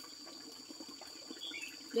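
Outdoor ambience: a steady, high-pitched insect drone, with a brief faint chirp about one and a half seconds in.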